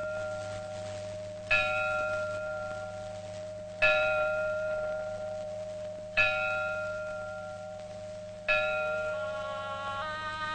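A bell struck four times at even intervals of a little over two seconds, each stroke ringing on and slowly fading, over a faint low hum.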